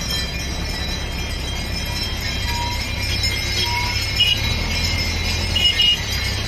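Slow traffic on a highway: motorcycle and vehicle engines with road noise, heard as a steady low rumble. Two brief high-pitched tones come about four seconds in and again near the end.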